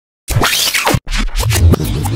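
A scratching, fast-forward-style sound effect over music. It starts after a short silence and sweeps quickly up and down in pitch.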